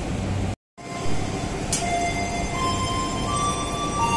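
Steady low hum and rumble of a passenger train standing at a station platform, cut off by a brief dropout about half a second in. After it, a few held tones come in one after another, each higher than the last.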